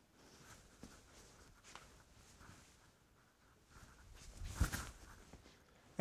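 Faint rustling and shuffling of a man's suit and shoes as he mimes a slow golf swing, picked up by a clip-on microphone, with a soft thump about three-quarters of the way through.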